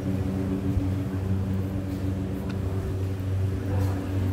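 A steady low machine hum, several even tones held without change.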